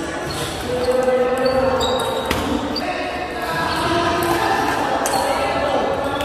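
Table tennis ball clicking sharply a few times on paddle and table, the sharpest click a little past two seconds in, over people's voices talking.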